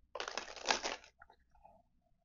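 Tarot cards being handled on a cloth-covered table: a papery sliding rustle lasting most of a second, then a few faint taps.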